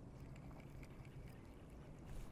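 Near silence: only faint, steady low background noise, with no distinct sound from the cast.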